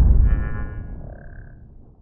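Intro logo-reveal sound effect: a deep low boom fading away over about two seconds, with a brief high ringing shimmer in its first second and a half.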